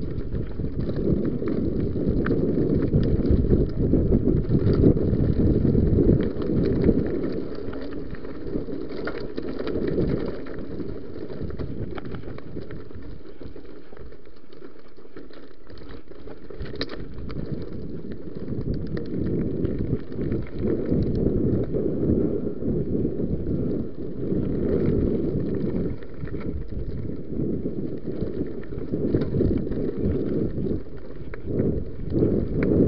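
Mountain bike riding fast over a rough dirt and stone trail: wind buffeting the body-worn camera's microphone, mixed with tyre noise and small rattles and knocks of the bike over the stones. It eases for a few seconds in the middle, then picks up again.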